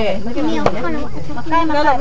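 A single sharp tap about two-thirds of a second in, a plastic rice paddle knocked against a plate while serving rice, over people talking.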